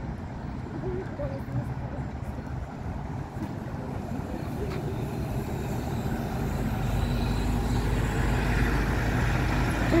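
An articulated city bus driving past close by: a low engine rumble amid road traffic noise, growing louder over the second half.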